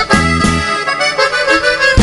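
Norteño band playing the closing bars of a corrido: accordion over electric bass and drums keeping a steady beat. About halfway through, the beat drops out and the accordion plays on alone, then the band lands a final hit right at the end.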